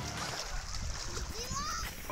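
Faint voices with a few rising and falling pitch glides over a soft outdoor hiss.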